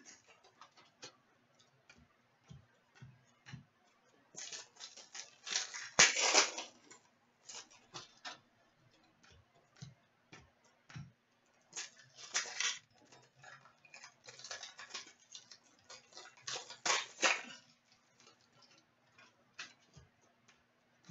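Hockey trading cards being sorted by hand: cards flicked and slid against one another and set down, giving soft irregular clicks and ticks, with a few short rustling swishes. A faint steady hum runs underneath.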